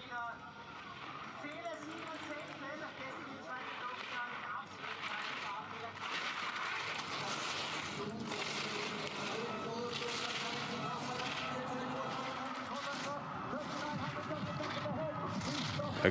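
Giant slalom skis carving and scraping over a hard, icy course, in short streaks of hiss, with crowd noise and voices behind. The sound grows louder from about six seconds in.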